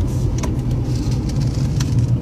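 Subaru Outback's 2.5-litre flat-four engine heard from inside the cabin, running steadily at about 2,500 rpm with road noise. The hum is smooth and well damped, without the raw boxer rumble typical of Subarus.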